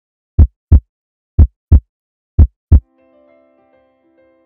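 Heartbeat sound effect: three loud lub-dub double thumps, about one a second. Soft sustained music notes come in faintly near the end.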